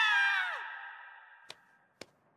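The tail of a girl's long, high-pitched scream, sliding down in pitch and fading out within about a second. A single sharp clap follows about a second and a half in.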